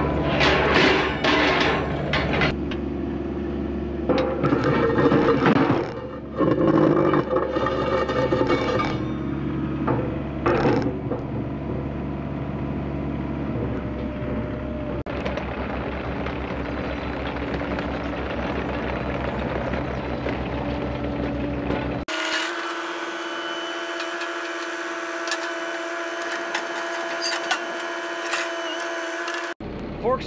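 Tracked excavator's diesel engine running steadily while the machine carries a set of skid steer pallet forks. The forks clank and scrape against metal and the trailer's wooden deck, most in the first several seconds and again about ten seconds in. About three quarters of the way through the sound cuts abruptly to a different steady hum.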